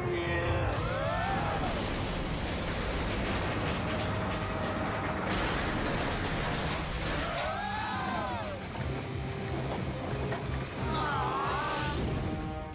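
Action-cartoon soundtrack music over a steady rumble, with a creature's rising-and-falling cries about a second in, around eight seconds and near the end.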